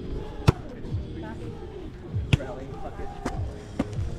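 A volleyball being struck by players during a rally: about four sharp hits, the loudest about half a second in, with the others later and closer together.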